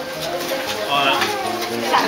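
People talking indistinctly.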